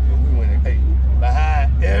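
A vehicle engine idling nearby: a loud, steady low rumble that does not change, under people talking.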